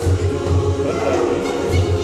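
Youth choir singing in harmony over a steady, repeating low pulse.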